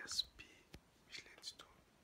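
A man whispering in short, hushed bursts close to the microphone, with one sharp click about halfway through.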